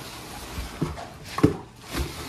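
Tissue paper rustling and a cardboard box being handled, with two short knocks near the middle, the second louder.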